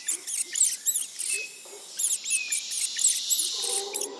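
Forest ambience: quick runs of short, high-pitched chirps, with a few brief whistles, over a faint hiss.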